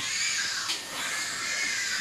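Pigs squealing in a hog barn: a continuous high-pitched din, with a light click a little under a second in.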